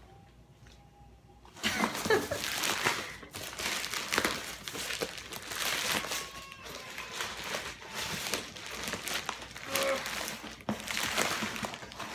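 Packing tape and plastic wrapping crinkling and tearing as a heavily taped parcel is pulled open, starting about a second and a half in.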